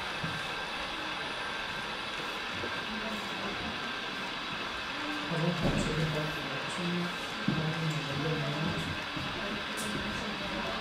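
OO gauge model goods train of mineral wagons running steadily along the layout track. Background voices of exhibition visitors join in from about halfway through.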